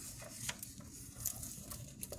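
Faint paper rustling and a few soft clicks as a picture book's pages are handled and turned.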